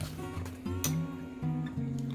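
Background music: acoustic guitar strumming under the video, with a brief click about a second in.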